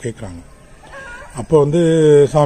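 A man's voice pauses briefly, then resumes loudly about one and a half seconds in; the gap holds only faint background sound.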